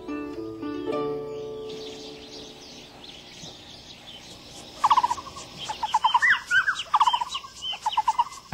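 Soft plucked-string music fades out in the first two seconds. From about five seconds in, a Taiwan blue magpie gives a run of harsh, rapid, repeated calls.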